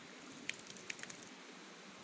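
Quiet outdoor background hiss with a few faint short clicks about half a second and about a second in.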